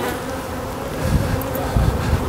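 Honeybees buzzing around an opened hive as brood frames are handled, a steady hum, with a low rumble in the second half.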